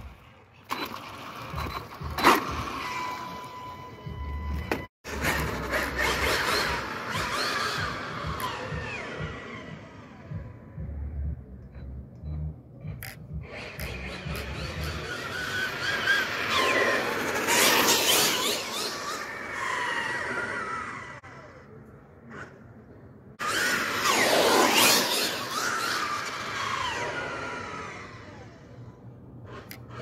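Losi Super Baja Rey 2.0 1/6-scale RC truck driving on asphalt: its brushless motor whines up and down in pitch as it speeds up and slows, over tyre noise. The loudest runs come about halfway through and again about three-quarters of the way through.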